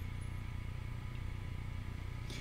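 Steady low background hum with faint hiss, room tone in a pause between speech, with no distinct event.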